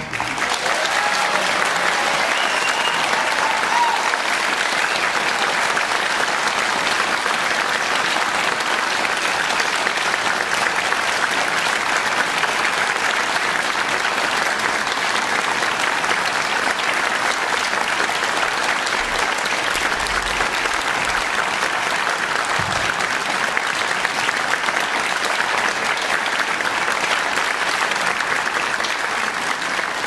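A concert audience applauding steadily.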